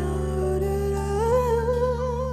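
A singer hums a long held note that steps up in pitch and takes on a vibrato about a second in, over a steady backing track of sustained chords.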